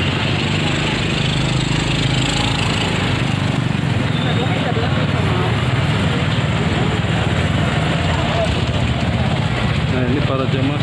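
Busy street ambience: background chatter of people talking and small motorbike engines running close by, over a steady low rumble.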